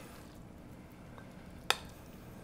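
Risotto being spooned into a ceramic bowl with a metal spoon: mostly quiet, with a single sharp clink of the spoon against the dish near the end.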